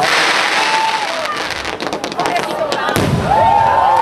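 Fireworks going off overhead: repeated bangs and crackling pops, with a big burst at the start and another heavy bang about three seconds in. Excited voices call out over it.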